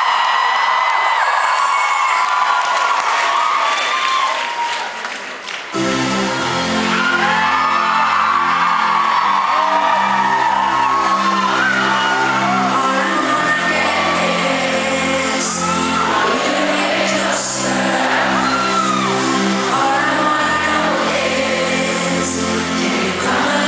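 Live pop concert in a large hall: a woman singing with no band behind her, over faint crowd noise. About six seconds in, the band comes in with low synth and bass chords under the lead vocal, and the song carries on.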